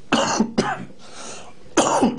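A man coughing into his hand: two quick coughs at the start and another near the end, with a short breath between.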